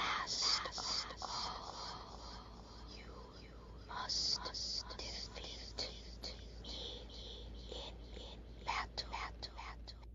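A voice whispering in a hissing tone for a cartoon snake's line, without clear pitch and broken into short phrases.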